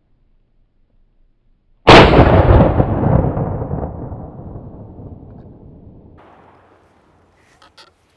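A single 12-gauge shotgun shot from a J.C. Higgins Model 60 semi-automatic, fired at a clay target about two seconds in, with a long echo that dies away over about five seconds. A few faint clicks follow near the end.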